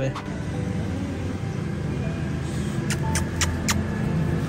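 A motor vehicle's engine runs steadily with a low rumble. About three seconds in come four sharp clicks in quick succession.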